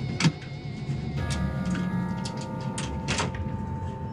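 Steady low rumble of a fishing boat's engine, with scattered knocks and clunks of footsteps on the stairs, the sharpest just at the start. A held music-score tone comes in about a second in.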